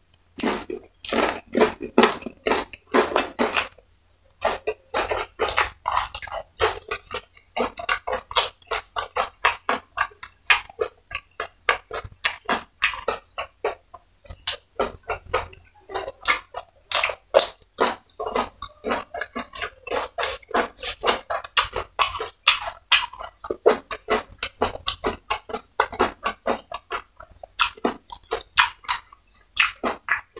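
Close-miked mouth sounds of a person eating fried chicken: wet chewing and lip smacking, a fast run of sharp clicks several times a second, with short pauses about four and seven seconds in.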